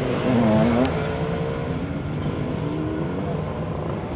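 Off-road motorcycle engines revving on a dirt course, their pitch rising and falling, with the loudest rev just under a second in.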